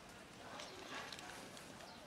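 Kittens crunching dry cat kibble from a plastic tub, faint scattered crunching clicks.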